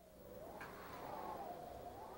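Wind howling, a faint whistling tone that wavers up and down in pitch, coming in about half a second in.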